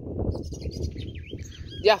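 Red-cowled cardinal calling: a few short high chirps and quick falling whistles, faint under a low rumble of handling noise on the phone's microphone.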